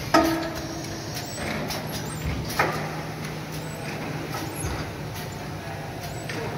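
Automatic bakery panning machine running with a steady low hum. There is a sharp metallic clank just after the start that rings on for about a second, another knock about two and a half seconds in, and irregular clicks from the moving parts.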